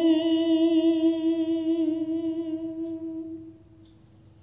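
A singer holding one long hummed note at the end of a line of a devotional bhajan, steady in pitch with a slight waver, fading out about three and a half seconds in.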